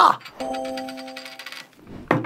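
A short chime-like tone, held about a second and fading away, with faint rapid ticking over it.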